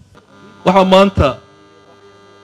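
Steady electrical mains hum in the microphone and loudspeaker system, with a short spoken burst from a voice a little over half a second in; the hum then runs on alone.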